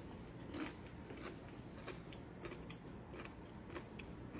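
Faint crunching of someone chewing a tortilla chip topped with dip: a few soft, irregular crunches.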